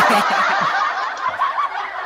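Laughter from several men at once, a dense, continuous burst that eases off slightly towards the end.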